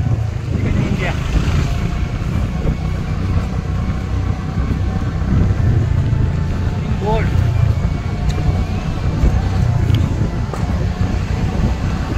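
Steady low engine and road rumble of a car driving slowly, heard from inside the car, with faint background voices now and then.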